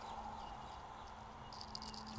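Faint, steady background ambience with a low, even hum and no distinct event.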